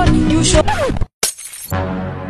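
Background song with a singing voice cuts off about a second in, followed by a short glass-shattering sound effect; a low, steady music drone begins near the end.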